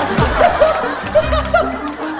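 Several people laughing and chuckling over background music.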